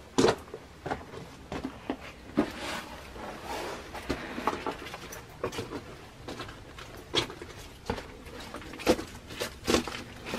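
Footsteps crunching and scuffing on loose gravel and dry fallen leaves in a narrow stone passage: irregular sharp crunches and clicks, with rustling in between.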